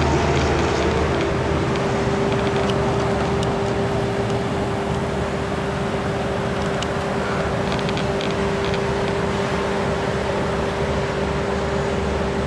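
A vehicle's engine running steadily: an even, unbroken noise with a low hum and one constant mid-pitched tone.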